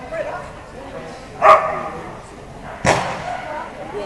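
A dog barks twice, sharp barks about a second and a half apart, the first the louder, over people talking.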